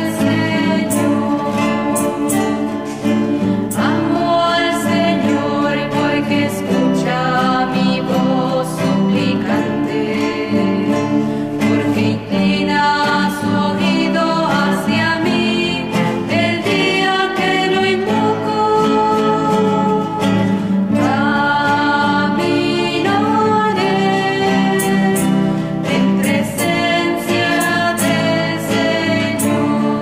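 Three women singing a religious song together, accompanied by two strummed acoustic guitars.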